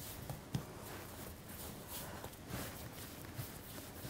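Faint, soft handling sounds of hands pressing and patting leftover scone dough scraps together on a floured worktop, with a light tap about half a second in.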